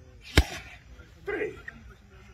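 A gloved boxing punch landing with a single sharp smack about half a second in, followed a second later by a brief voice sound from one of the boxers.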